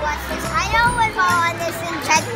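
A young child's voice, with no clear words, over steady carousel music.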